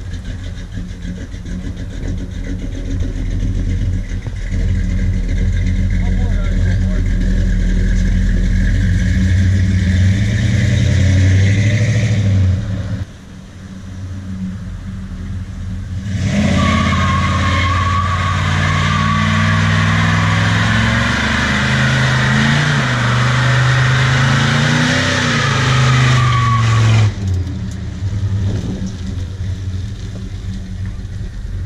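1979 Chrysler Cordoba's 360 V8 revving hard while doing burnouts, rear tyres spinning and squealing on the pavement. The revs climb for about twelve seconds and drop off briefly, then the engine holds high for about ten seconds with loud tyre squeal before easing back near the end.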